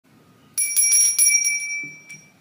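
A small high-pitched bell rung rapidly, about six strikes in a second, its ringing fading away near the end.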